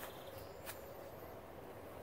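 Quiet outdoor background with a faint, high, wavering bird chirp about a second in and a single soft tap just before it.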